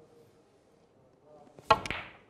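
Snooker cue tip striking the cue ball in a screw-back (backspin) shot, a single sharp click near the end, followed a split second later by the cue ball clicking into a red.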